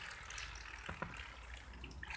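Faint water trickling and dripping in a paddling pool, with two small ticks about a second in.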